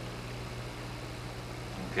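Steady low hum with a faint hiss behind it: the background room tone of the recording, with no other event.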